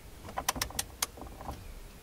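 A torque wrench on a 10 mm hex bit being forced against a Loctite-locked steering-wheel bolt. There is a quick run of sharp clicks in the first second and a half as the bolt is strained to break loose.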